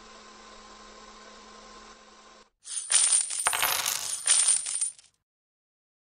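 A faint steady hum, then from about halfway in a loud clattering, jingling sound effect that lasts about two seconds and stops abruptly.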